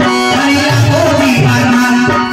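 Traditional Odia Bharat Lila folk-theatre music. A drum keeps a steady beat under a sustained drone note and a wavering melody line.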